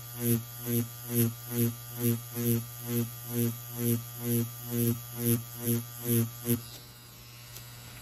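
Electric tattoo machine with magnum needles buzzing as it whip-shades into practice skin. Its sound swells and fades about twice a second with the strokes, then it stops about six and a half seconds in.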